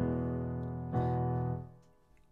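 Two sustained chords played on a digital keyboard set to a layered grand piano and FM electric piano sound. The second chord comes about a second in, and it fades away near the end.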